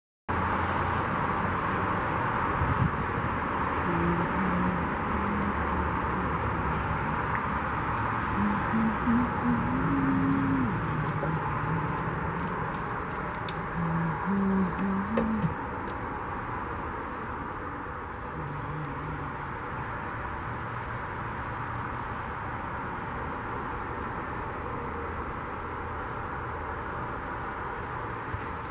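Steady background noise, with faint low hums coming and going in the first half before the level settles a little lower.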